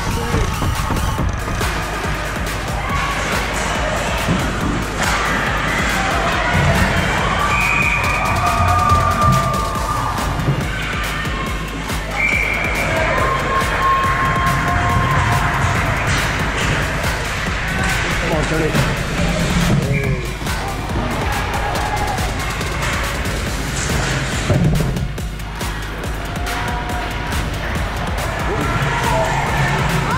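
Background music with a steady beat and a held melody line.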